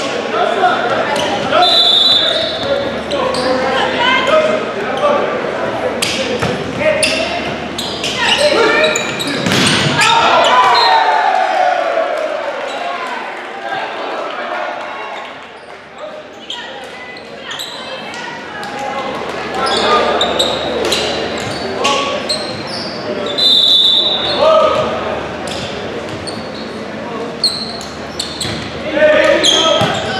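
Volleyball rally in an echoing gym: sharp ball hits from serves and spikes, players shouting and calling, and a short shrill referee's whistle blown twice, about two seconds in and again shortly after twenty-three seconds.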